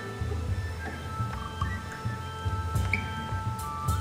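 Guitar notes from a single-string riff, played softly and left ringing as steady, sustained tones.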